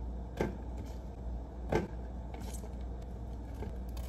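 Two light knocks or clicks about a second and a half apart, with a faint third, over a steady low hum.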